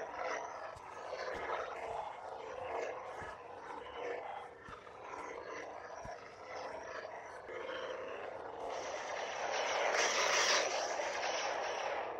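Xenopixel V3 lightsaber sound board playing its hum and swing sounds through the hilt's speaker as the blade is swung, rising and falling with the motion and loudest near the end.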